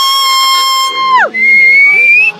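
Two loud whistle notes. The first is long and held, sliding up at the start and falling away at the end. The second is higher and shorter, and rises slightly in pitch.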